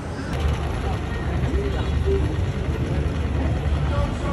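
Busy city-square street sound: scattered voices of passers-by over a steady low rumble, the sound changing abruptly just after the start.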